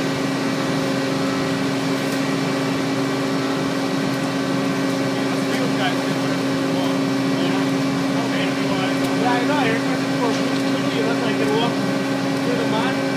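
Heavy construction machinery's diesel engine running at a steady speed, a constant hum; faint voices in the background.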